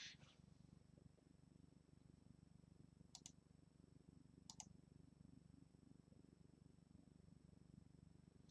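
Near silence: a faint low hum, with two soft double clicks about three and four and a half seconds in, each likely a click or pen tap switching a layer's visibility off and then on again.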